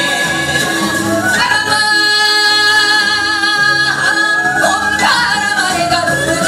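Women singing a Korean folk song (minyo) over accompaniment music with a steady beat, holding one long note from about a second and a half in to about four seconds in.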